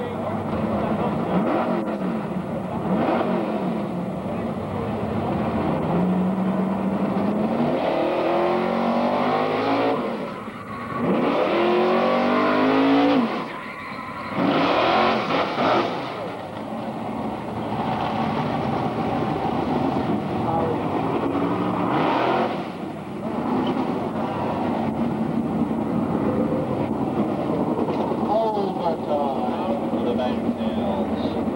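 A pickup truck's engine revving hard and accelerating, its pitch climbing and dropping several times through the run, with louder rushes of noise about a third and halfway through, over a crowd shouting.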